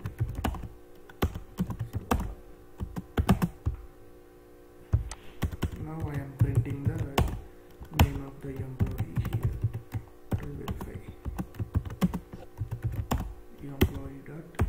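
Typing on a computer keyboard: irregular bursts of keystrokes, with a brief lull about four seconds in.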